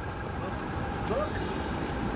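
Steady city background noise: a constant rumble of traffic with indistinct voices.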